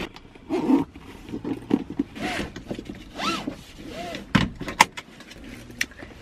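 Handling noises from rummaging in a handbag inside a car: soft rustles, with two sharp clicks about four and a half seconds in, and a few short rising-and-falling tones.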